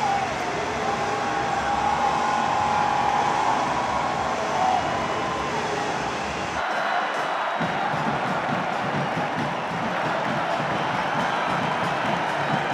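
Large stadium crowd cheering and singing. The crowd sound changes abruptly about two-thirds of the way in.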